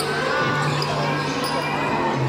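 Basketball court sounds in a large covered gym: a ball bouncing on the court with crowd voices around it.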